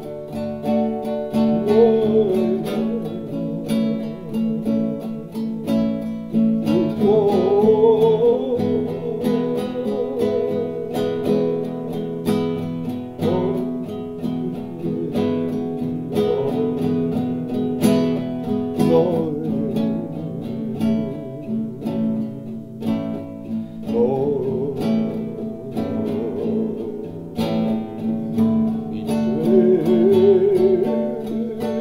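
Acoustic guitar played as a slow blues, strummed and picked over a steady low bass note. A voice sings a wavering melody along with it at times.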